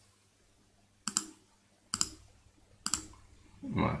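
Three sharp computer mouse clicks about a second apart, each a quick double click-clack of press and release, setting the corner points of a polygonal lasso selection in Photoshop.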